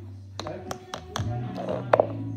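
About five sharp taps or clicks at uneven intervals, over background music.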